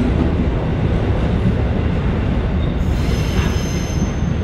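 Loaded container wagons of a freight train rolling past at speed with a steady rumble of wheels on rail. About three seconds in, a thin high wheel squeal joins.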